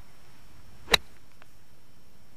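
A golf club striking the ball on a short pitch shot: one sharp click about a second in, followed by a few faint ticks.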